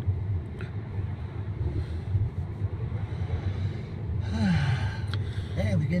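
Steady low rumble of a car driving, engine and tyre noise heard from inside the cabin. A voice briefly exclaims near the end.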